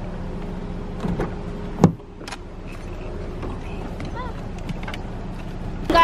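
A Honda sedan's door handle clicks and the car door thuds shut with one sharp knock just under two seconds in, over a steady low hum.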